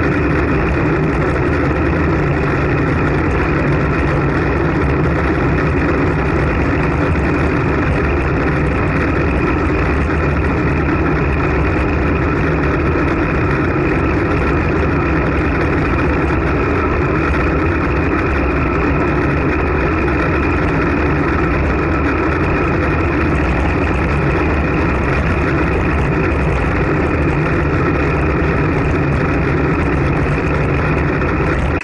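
Steady, loud rush of wind and road noise on the microphone of an action camera riding on a road bike at about 20 to 30 km/h.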